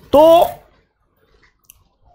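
A man's voice saying one short word, then a quiet pause in a small room with a faint click near the end.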